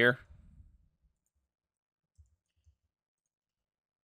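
Faint, low clicks of a computer mouse in use, two of them about half a second apart near the middle, in otherwise near silence.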